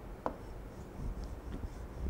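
Pen or stylus writing on the glass of an interactive touchscreen display, tracing a resistor zigzag: a sharp tap about a quarter second in, then faint scratching.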